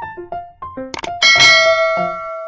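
A click, then a bright notification-bell ding that rings out for about a second and fades, over light music of short plucked notes.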